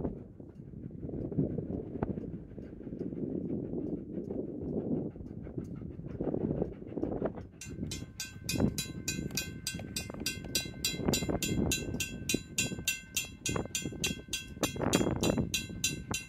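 Steam train approaching, a low uneven rumble. About halfway in, a fast, even ringing with several steady tones starts and keeps going.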